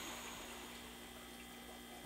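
Faint room tone: a low, steady electrical hum with light hiss.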